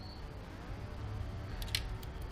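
Faint low hum of room tone, with a couple of small light clicks near the end as fingers handle the motorcycle's exposed gear shift mechanism.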